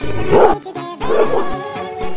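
Background music with a steady beat, and over it a Welsh corgi gives two short, rough vocal bursts, about half a second in and again past the one-second mark, while tugging a strap in its teeth.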